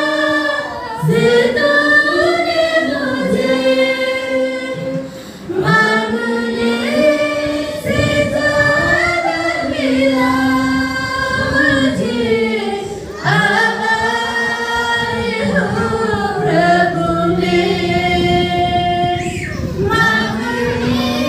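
Church congregation singing a worship song together, many voices with women's voices prominent, in long phrases with brief breaks between them.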